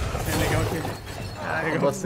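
Film sound effects of glass and debris shattering and settling, followed by a voice speaking near the end.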